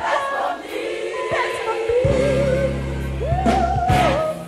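Gospel choir singing with instrumental accompaniment. The bass drops out for the first half and comes back in about halfway through, and a voice rises to a held note near the end.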